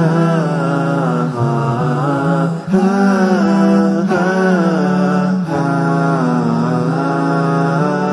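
Title music for a programme segment: a chanted vocal melody that rises and falls about once a second over a steady low held drone.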